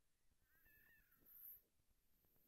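Near silence, with a faint, brief high-pitched cry that wavers and falls slightly, about half a second in.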